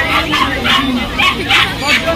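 Puppies yipping and barking several times over a crowd's background chatter.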